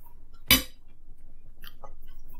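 A metal fork clinks once against a dinner plate about half a second in, followed by a few faint small clicks of cutlery.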